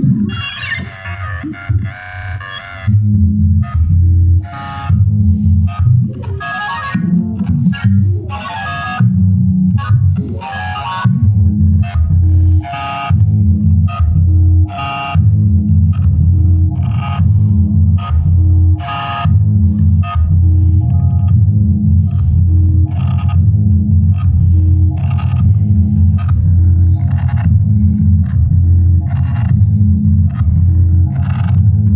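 Electronic techno played on Korg Volca synthesizers: a sequenced synth bass line under bright, bell-like FM notes from a Korg Volca FM's xylophone patch. After a looser first few seconds the pattern settles into a steady loop, with the bright notes striking about once a second.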